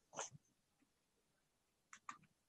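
Near silence: room tone, with one brief faint noise about a fifth of a second in.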